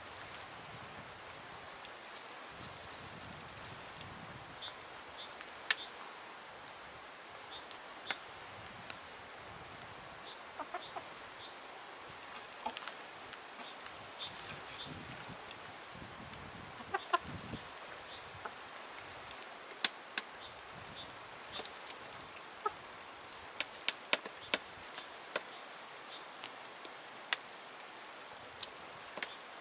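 A flock of chickens feeding from a wooden tray: occasional quiet clucks over many sharp taps of beaks pecking food off the wood. Short high chirps recur in small groups throughout.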